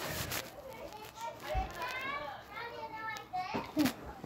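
Children's voices chattering faintly in the background, with a couple of sharp knocks, the loudest just before the end.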